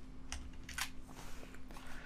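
A few separate computer keyboard keystrokes as copied CSS code is pasted into an editor on a new line.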